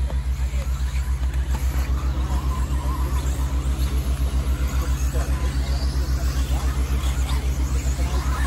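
Radio-controlled 4WD racing buggies running on a dirt track, their motors whining up and down in pitch as they race. Under them is a steady low throbbing hum, pulsing about seven times a second.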